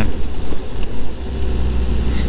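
Suzuki GSX-S750's inline-four engine running at a steady pace while riding, under a heavy low rumble of wind on the bike-mounted microphone.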